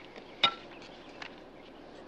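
One sharp knock with a short ring about half a second in, followed by a few faint ticks over steady low background noise.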